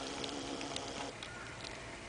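Quiet outdoor background noise with a few faint, light ticks.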